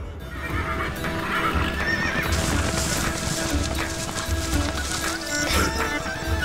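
Horses' hooves clip-clopping and a horse neighing over a steady music bed.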